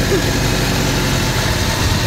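Motorcycle engine running steadily while riding along.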